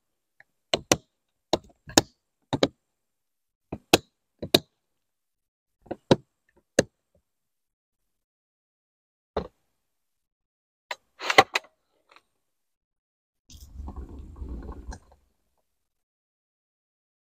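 Plastic latches on a Lykus HC-7530 hard case being snapped shut one after another: sharp clicks, often in quick pairs, with a looser cluster of clicks about eleven seconds in. A short low rumble follows near the end.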